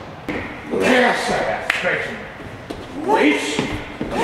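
Two loud bursts of voices calling out, with a few sharp smacks between them, typical of kicks and blocks landing in a sparring drill.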